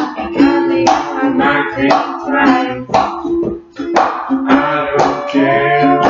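Ukulele strummed in a steady rhythm, with a strong downstroke about once a second, accompanying a singing voice.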